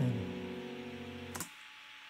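An acoustic guitar chord and the tail of a sung note ring out and fade. About a second and a half in there is a click, the music cuts off suddenly as playback stops, and faint room tone follows.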